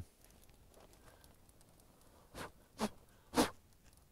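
A mostly quiet stretch with three short, soft crunches or rustles from a little over two seconds in, the last the loudest.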